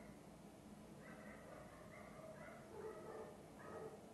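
Dogs barking in the distance, faint: a string of short barks repeating every half second or so, starting about a second in.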